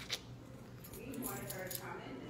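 Handling noise from a phone held close to its microphone as it is moved: a click just after the start, then rubbing and scratching, with faint talk in the second half.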